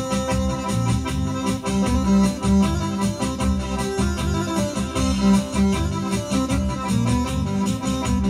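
Live instrumental break played on an accordion and an electronic keyboard over a steady beat and bass line, with no vocals.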